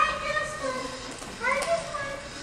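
Young performers' voices: two short bits of speech from children, one at the start and another about a second and a half in.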